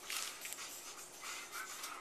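Sealed trading-card sticker packs rustling and crinkling as they are shuffled in the hand and set down on a table.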